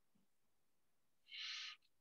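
Near silence, broken once about a second and a half in by a faint, brief high-pitched sound.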